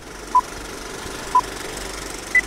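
Film-leader countdown sound effect: the steady rattle of a film projector running, with a short beep every second, two beeps in all.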